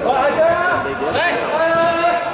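Several voices shouting and calling out at once in an echoing sports hall.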